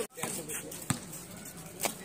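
A basketball bounced twice on a concrete court, two sharp knocks about a second apart.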